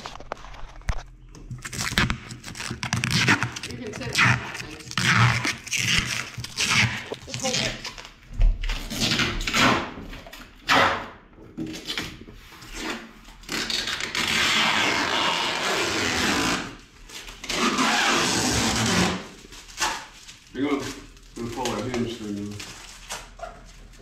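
Protective plastic wrap being peeled and crinkled off a new refrigerator, in short irregular rips and rustles, with two longer stretches of steady peeling past the middle.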